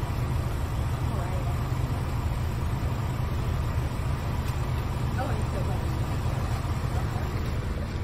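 Steady low outdoor rumble picked up by a phone microphone, with faint voices now and then.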